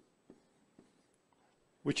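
A pause in a man's speech: near silence with a few faint, soft ticks, then his voice comes back in just before the end.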